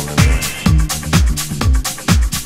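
House-style club dance track: a steady four-on-the-floor kick drum at about two beats a second, with crisp hi-hats and a bassline.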